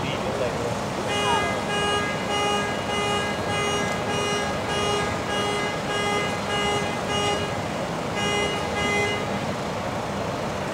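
A car horn sounding in a repeating on-off pattern, about two honks a second, the pattern of a car alarm going off. It pauses briefly near the end, sounds a few more times, then stops.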